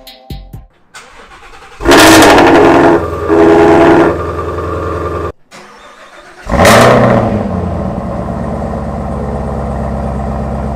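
A V8 muscle car engine is started twice. Each start catches with a loud flare of revs that falls back to a steady, fast cold idle. The first run cuts off suddenly after about three seconds.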